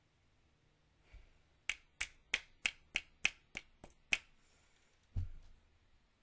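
A quick run of nine sharp clicks, about three a second, followed about a second later by a single dull thump.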